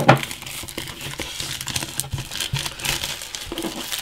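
Clear plastic shrink-wrap crinkling as it is peeled and pulled off a smartphone box, with a sharp crackle at the start and dense crackling throughout.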